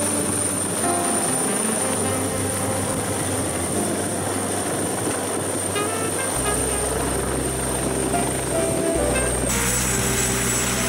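Background music with slow held bass chords that change about six seconds in, over the rotor noise of an AgustaWestland AW139 helicopter touching down on a ship's helideck.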